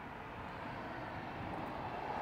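Steady rushing noise of a passing vehicle, slowly growing louder.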